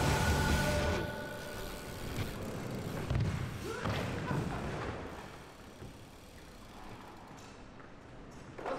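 Background music that cuts off about a second in, followed by thuds and knocks of a BMX bike coming down and falling onto a concrete skatepark floor after a bailed trick, with a brief voice in the middle. The sound echoes in a large hall.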